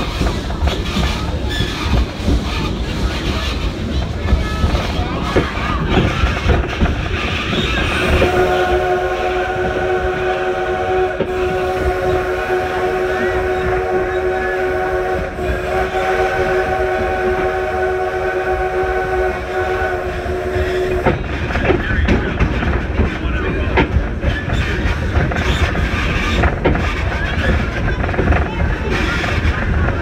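Steam locomotive's whistle sounding one long chord of several notes for about thirteen seconds, starting about eight seconds in and cutting off near the twenty-first second, over the steady running noise and clicking of the train's wheels on the rails.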